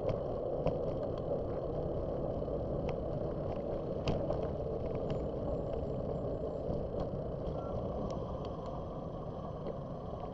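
Riding noise from a bicycle: a steady rush of tyre and wind noise with scattered small rattling clicks from bumps in the pavement, and road traffic in the background.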